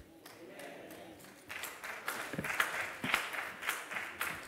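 Congregation applauding: a patter of many hand claps that swells about a second and a half in.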